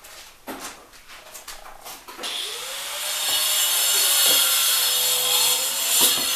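A few knocks, then about two seconds in a power tool starts: its motor tone rises and settles while a loud, hissing cutting noise runs on.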